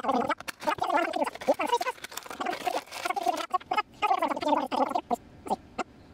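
Cardboard action-figure window box and its clear plastic inner tray being slit open and pulled apart by hand, with irregular squeaky rubbing and crinkling. Near the end it thins out to separate sharp plastic clicks.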